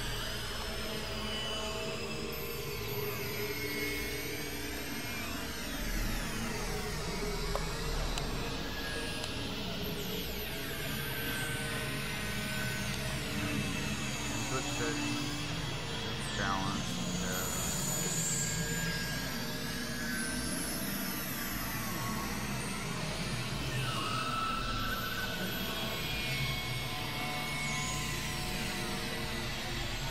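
Experimental electronic noise music: layered synthesizer drones and held tones with many pitch glides sweeping up and down, over a constant low hum.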